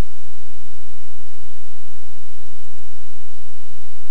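Steady low electrical hum with even hiss: the recording's own background noise, with nothing else happening.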